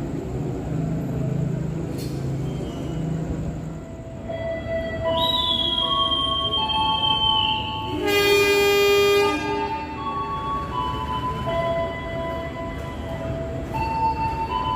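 A train horn sounds once, loud and for about a second and a half, roughly eight seconds in, as the train is dispatched from the platform. Before it, a steady low rumble of the standing train. From about four seconds on, a melody of held notes plays, and a high whistle-like tone slides slightly downward a few seconds before the horn.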